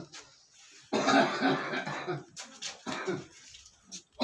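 A person coughing: one loud, rough cough about a second in, followed by a few shorter, weaker ones.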